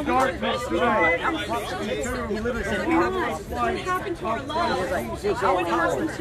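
Speech only: people talking over one another.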